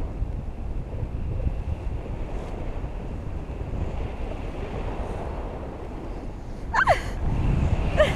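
Airflow buffeting the camera microphone on a flying paraglider, a steady low rumble that swells near the end as the glider banks. About seven seconds in, a short high cry falls sharply in pitch.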